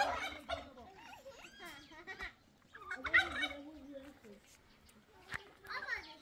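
Domestic fowl calling in three short bursts: at the start, about three seconds in, and near the end.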